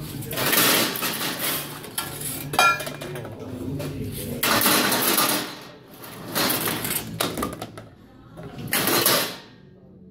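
Bottles and cans clattering through a recycling sorting machine's stainless-steel chute and conveyor and dropping into plastic bins, in several separate bursts. A sharp ringing clink about two and a half seconds in.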